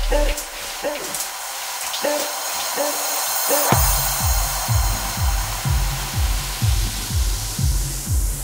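Tech house track in a breakdown. The kick and bass drop out, leaving short repeating synth stabs over a rising noise sweep. A little past halfway the kick drum and bass come back in at about two beats a second.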